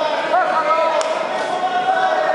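Overlapping voices of spectators talking and calling out, with one sharp click about a second in.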